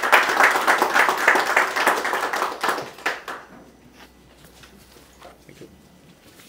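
Audience applauding, a dense clatter of clapping hands that dies away about three seconds in, followed by a quiet stretch with a few faint taps.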